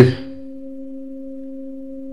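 A steady, unchanging hum on one low note with a fainter note an octave above it, after a man's spoken word ends in the first moment.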